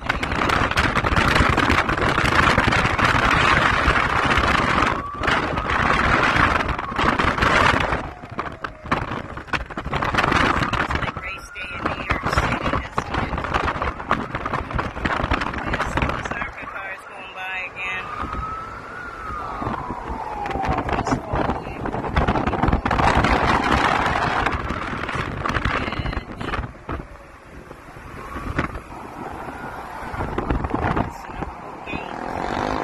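Rushing wind and road noise from a moving car, with the distant engine whine of ARCA race cars on the speedway coming through several times, each rising or falling in pitch as the cars pass.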